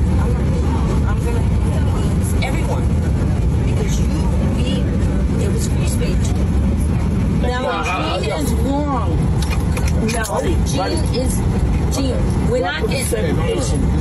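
Steady low rumble of an airliner cabin, with indistinct voices talking from about seven seconds in and again near the end.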